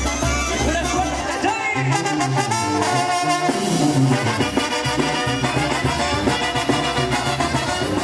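Latin brass-band music with trumpets playing steadily throughout.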